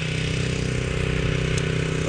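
Engine running steadily at an even speed, a low hum that holds one pitch throughout.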